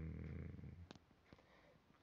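A man's low, steady hummed "mm" lasting about half a second, then near silence with a few faint clicks.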